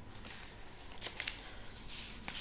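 Paper pages of a book being turned and handled: a few crisp rustles and flicks, the sharpest about a second in.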